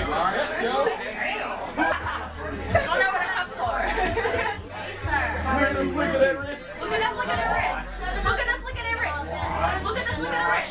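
Several people talking over one another throughout: the chatter of a small crowd in a room.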